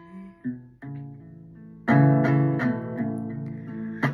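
Acoustic guitar with a capo, played on its own between sung lines: a few soft single notes, then a louder strummed chord about two seconds in that rings on under lighter strums.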